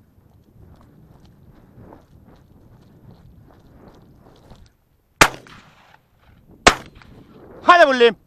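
Two shotgun shots about a second and a half apart during a partridge hunt, each a sharp crack, the first trailing off in a short echo. A man shouts near the end.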